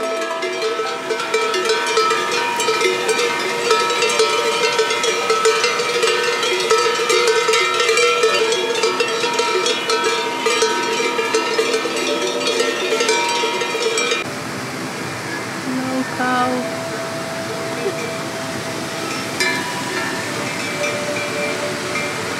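Bells on grazing cows clanking and ringing, many strikes overlapping for the first fourteen seconds or so, over the steady rush of a mountain river. After that the river carries on with only a couple of single bell clanks.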